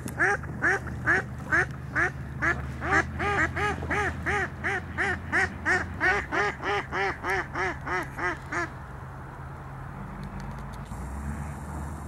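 A goose honking in a fast, even run of short calls that rise and fall in pitch, about four a second. The calls stop abruptly about nine seconds in, leaving a low background rumble.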